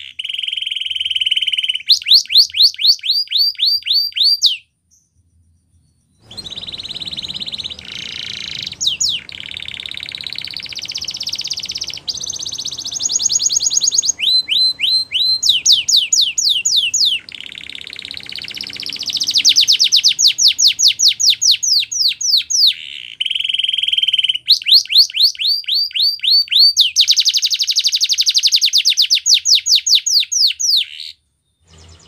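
Domestic canary singing a long, varied song: fast runs of repeated notes that sweep downward alternate with rapid high trills. It breaks off briefly about five seconds in.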